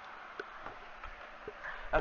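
Steady background hiss with a few faint, brief clicks.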